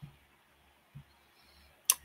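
Near-silent room tone, broken shortly before the end by a single sharp click.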